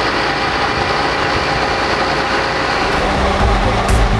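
Ready-mix concrete truck's diesel engine running steadily with the mixing drum turning. Background music with a low beat fades in near the end.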